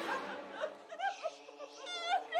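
A woman laughing playfully in a string of short, high-pitched laughs.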